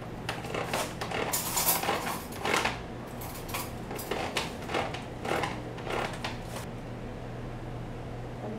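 Handheld gear-wheel can opener cutting around the lid of a metal tin can: a run of irregular metallic clicks and scrapes, several a second, as the key is turned, stopping near the end.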